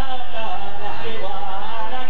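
Harari zikri song: a male voice singing a wavering melodic line over a steady held accompaniment.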